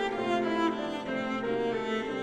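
Cello and grand piano playing classical chamber music together: the cello bows sustained notes over the piano's changing chords.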